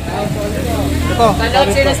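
People talking close by, with the low, steady rumble of a passing motor vehicle under the voices from about half a second in.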